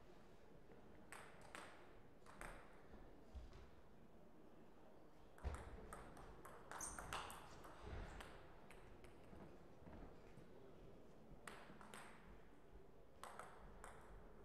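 Table tennis ball ticking off paddles and the table. A few single ticks come first, then from about five seconds in a rally of quick ticks lasts a few seconds, and a few more ticks come near the end.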